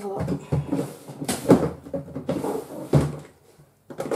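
Rummaging through a plastic storage box of craft supplies: irregular clattering and rustling, with sharp knocks about one and a half seconds in and again near three seconds.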